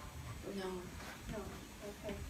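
Speech only: a woman answers "No." and other voices talk quietly in the room.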